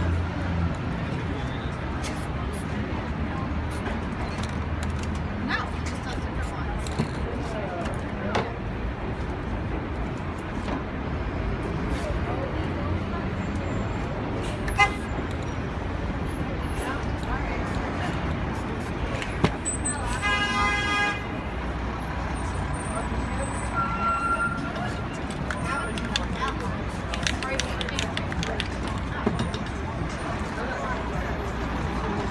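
Busy city street noise with traffic and background voices, and scattered sharp clicks and knocks. A vehicle horn sounds once for about a second and a half, about two-thirds of the way in.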